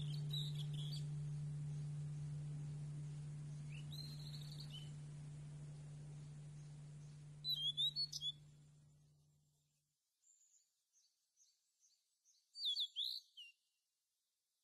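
Small birds chirping in short bursts, about four times, the loudest near the middle and near the end, with fainter twitters between. Under the first part a steady low hum, the tail of a music drone, fades out about two-thirds of the way through.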